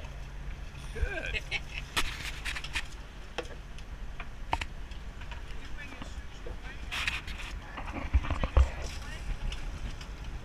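Steady low rumble of a sportfishing boat under way, with wind on the microphone. Scattered sharp clicks and knocks on deck are heard throughout, and two heavier low thumps come a little after eight seconds in.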